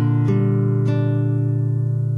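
Alhambra 7P nylon-string classical guitar being fingerpicked: a low bass note rings throughout while new plucked notes sound about a quarter second in and again just under a second in, then ring down.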